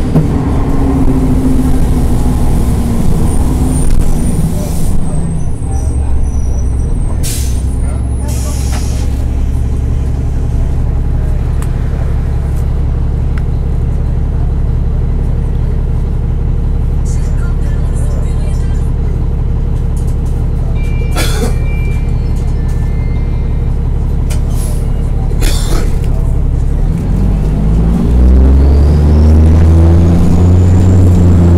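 Cummins M-11 diesel engine of a NABI transit bus heard from inside the cabin. The bus slows to a stop with the engine note falling, idles steadily for about twenty seconds with a few short hisses of air, then pulls away near the end with the engine note rising through the Allison automatic's gears.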